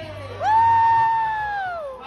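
One person's long, high-pitched whoop: the voice leaps up about half a second in, holds one steady pitch for over a second, then slides down and fades near the end.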